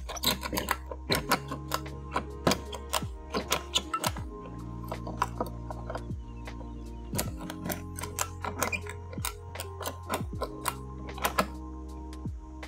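Metal ratchet on a webbing tie-down strap being worked to tighten it, clicking in short irregular runs. Background music with steady held notes and bass plays underneath.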